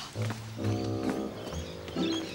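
Background score music: a short phrase of held notes.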